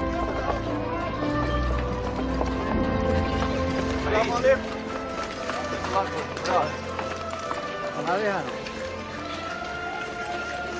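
Film score with long held notes over the bustle of a crowd of excavation workers, with voices calling out several times and a man's greeting, "Dr. Langford. Hello."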